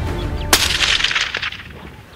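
A single hunting rifle shot about half a second in, its crack trailing off in a long echo that fades over about a second. Background music under the first half-second cuts off at the shot.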